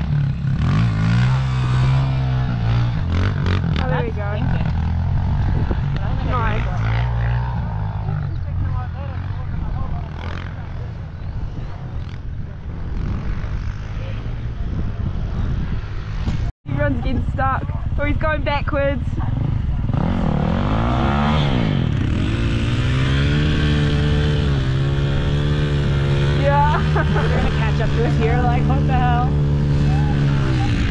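Trail motorbike engines running at idle and being revved, one rev rising and falling about twenty seconds in, with indistinct voices calling over them. The sound cuts out for an instant just past the middle.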